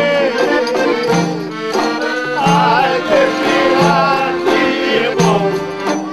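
Traditional Greek folk song: a man's voice sings a slow, wavering melody over a plucked laouto (long-necked lute), whose low notes fall about every second and a half. The clarinet is not playing.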